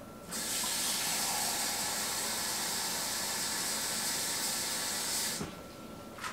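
Kitchen faucet running water into a glass measuring cup: a steady hiss that starts about half a second in and shuts off abruptly near the end.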